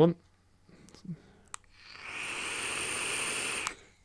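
Draw through a Smok TF sub-ohm tank with its airflow closed to about a quarter open: a click, then a steady breathy hiss of air rushing through the restricted airflow slots with a thin high whistle. It lasts just under two seconds and ends with a click. The narrow setting makes the draw restrictive.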